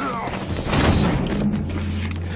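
A loud, noisy crash lasting about a second and a half as men grapple in a scuffle, over dramatic score music that settles into a low steady drone.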